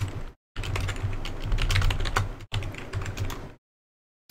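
Computer keyboard typing: a quick run of key clicks over a low hum, with a short break about two and a half seconds in, stopping shortly before the end.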